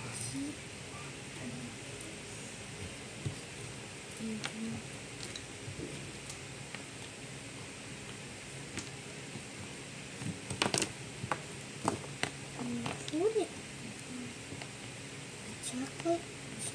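Faint, scattered bits of a person's voice in a small room, with a few sharp clicks around two-thirds of the way through.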